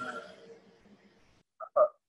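A man's voice over a phone connection: a drawn-out hesitant "uh" trails off, then two short throaty vocal sounds come near the end before the audio cuts to silence.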